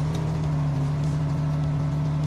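A car engine idling at a steady, even pitch, used as the sound of a channel logo intro.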